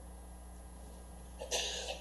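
A single short cough about a second and a half in, over a steady low hum.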